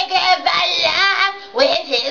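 A woman's high voice singing wordless notes, with a fast warble about halfway through.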